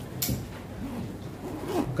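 A brief rustling scrape about a quarter of a second in, in a short pause between a man's sentences; his voice starts up again near the end.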